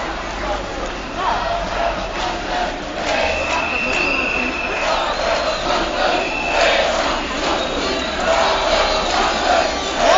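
Large street crowd of protesters shouting and chanting, many voices at once. A high held note cuts through twice in the middle.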